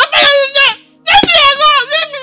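A high-pitched wailing voice, in two long drawn-out cries with bending pitch, the second starting about a second in.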